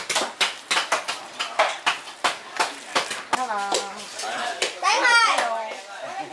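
Wooden spoon stirring raw fish slices in a large stainless steel bowl: a wet knock about three times a second. After about three seconds voices take over, one rising high near the end.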